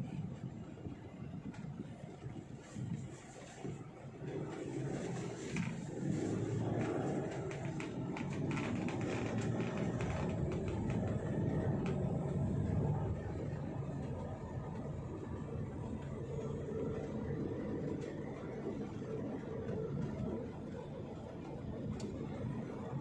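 Engine and road noise heard from inside a moving car's cabin: a steady low rumble that grows louder about five seconds in.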